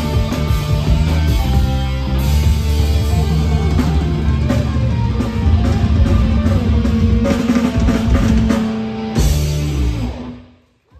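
Heavy metal band playing live: distorted electric guitars, bass and drums, loud and driving, ending the song on a last chord struck about nine seconds in, held briefly and then stopped.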